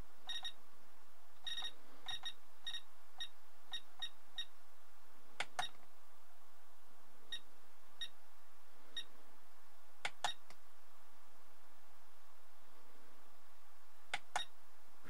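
Short, high electronic key beeps from a ToolkitRC M6D AC battery charger, about a dozen, unevenly spaced as its thumb wheel is clicked through menu values. A few sharper clicks come about halfway through and again around ten seconds in.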